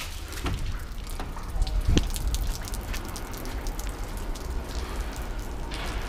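Water dripping and pattering onto wet pavement, many small irregular drips, over a steady low rumble, with one heavier thump about two seconds in.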